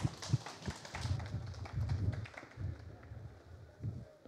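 Scattered, sparse clapping from a small audience mixed with low footstep thuds on a stage floor.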